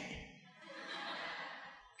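Soft, breathy laughter without voiced tones, lasting about a second, in response to a joke.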